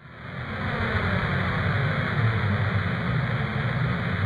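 A steady, deep rumble with a hiss over it, fading in over the first half second: a sound-effect rumble laid under the footage of spacecraft in orbit.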